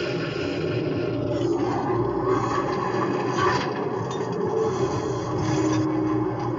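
Mono movie soundtrack played very loud over cinema speakers in a small room: a dense, steady noisy passage with no clear dialogue, with a faint steady tone near the end.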